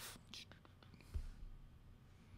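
A quiet pause with faint room tone and a few soft clicks, and a low bump about a second in.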